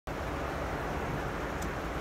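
Steady outdoor background noise: an even hiss over a low rumble, with no distinct events.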